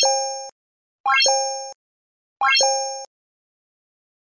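Three identical electronic sound effects of an animated like-subscribe-bell end screen, about 1.3 seconds apart. Each is a quick rising run of notes ending in a held two-note tone that cuts off suddenly.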